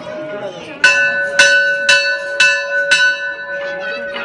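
Temple bell struck five times, about two strikes a second. Each stroke rings on into the next, over the chatter of a crowd.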